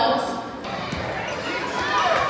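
A basketball bounces once on the hardwood gym floor about a second in, heard in a large, echoing gymnasium over background chatter.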